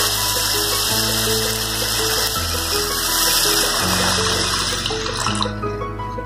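Water being poured into a cooking pan of mashed mango, a steady rushing splash that stops suddenly about five and a half seconds in, over background music.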